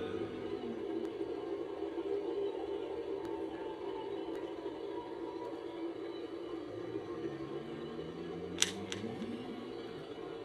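Slowed-down, echoing drone: a steady hum with low tones gliding up and down beneath it, and one sharp click near the end.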